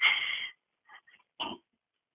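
Short breathy vocal sounds from a person heard over a telephone line: a half-second burst at the start, then a brief one about a second and a half in.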